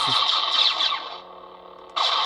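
Xenopixel v3 lightsaber sound board playing a blaster effect set off by a tap of the button: a crackling burst with quick downward sweeps that dies away about a second in to the blade's steady low hum. A second blast starts sharply just at the end.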